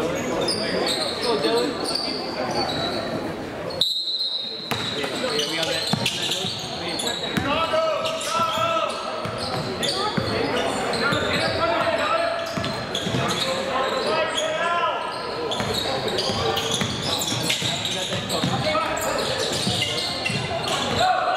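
Basketball dribbled on a hardwood gym floor, with players' and spectators' voices echoing around the gym. The sound drops out briefly about four seconds in.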